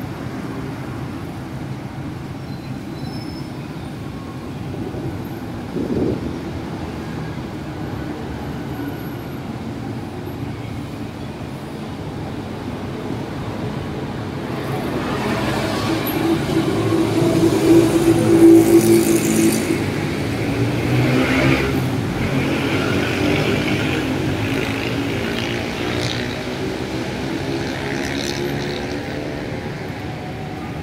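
Steady road-traffic noise from a busy multi-lane road. It swells louder about halfway through as a vehicle engine passes close, then eases back.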